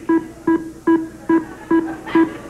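The Price is Right Big Wheel spinning, its pointer clacking past the pegs in short, pitched knocks about two and a half times a second.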